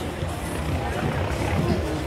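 Busy night street ambience: music playing from bars with a heavy bass, mixed with passing road traffic and people's voices.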